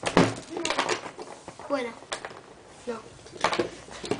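A sharp knock of hard plastic on a tabletop just after the start, followed by a few lighter taps, amid children's talk.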